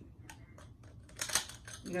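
Light clicks, then a short clatter about a second in, as the metal poles and small plastic connectors of a flat-pack shoe rack are handled and picked up during assembly.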